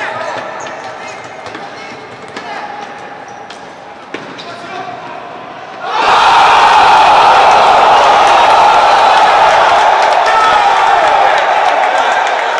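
Sounds of an indoor futsal game: the ball thudding on the hard court and players shouting, echoing in a hall. About six seconds in, a loud, steady crowd noise of cheering and shouting starts suddenly and runs on.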